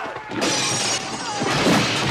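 Film sound effects of a violent creature attack: a loud shattering crash about half a second in, then a second, heavier crash with a deep thud near the end.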